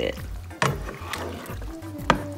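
A spoon stirring creamy penne in a metal skillet, with two sharp clicks against the pan about half a second and a second in, over background music.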